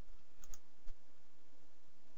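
A few light computer mouse clicks within the first second, over steady low background noise.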